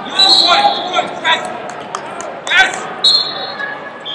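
Shouts from coaches and onlookers in a large echoing hall during a wrestling match, with several sharp thuds and a few short high squeaks.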